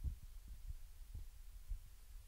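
Faint steady low hum of recording room tone, with a few soft low thuds.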